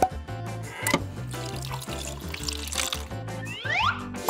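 Liquid pouring from a plastic dispenser tap into a drinking glass over background music, with a couple of clicks in the first second and a rising whistle-like glide near the end.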